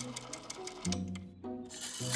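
Rotary telephone dial spinning back after being dialed, a rapid run of clicks that breaks off briefly near the end and starts again, over light background music.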